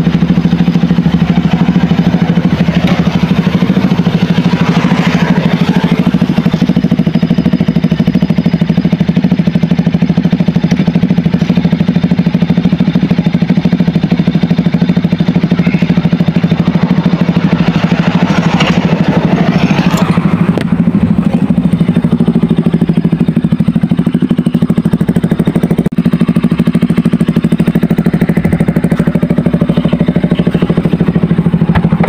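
Motorcycle engine idling steadily, with brief swells of louder noise twice along the way.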